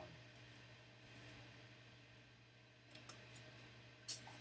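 Near silence over a low steady hum, broken by a few faint clicks and rustles of a clear plastic card sleeve being handled, with a small cluster of clicks about three seconds in.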